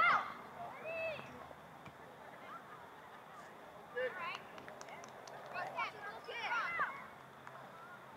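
Shouting voices from players and onlookers at a youth soccer game, heard from a distance as short high-pitched calls: the loudest right at the start, another about a second in, then a run of calls from about four to seven seconds. A few faint ticks come between them.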